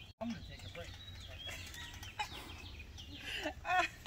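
Faint laughter and distant voices, with a short run of laughing syllables near the end, over a low steady rumble.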